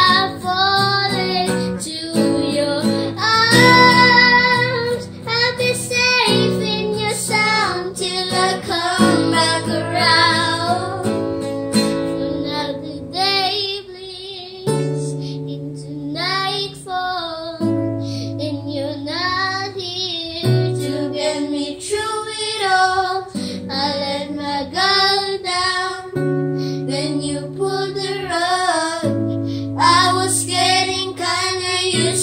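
A young girl singing a slow ballad in phrases over a strummed and picked acoustic guitar.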